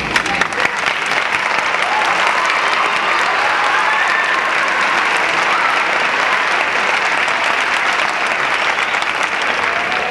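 Audience applauding: dense, steady clapping that starts abruptly and holds at an even level, with a few voices calling out within it.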